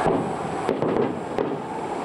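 Three sharp bangs of riot-control munitions such as tear gas launchers, about 0.7 s apart, over a steady noise of a large crowd.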